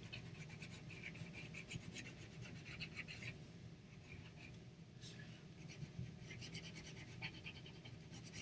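Pencil scratching on paper in quick back-and-forth strokes as a stripe is shaded in; faint, with a few sparser moments around the middle.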